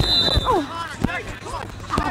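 Scattered shouts and calls from people out on and around a lacrosse field. A steady high tone carries over into the first half second and then stops.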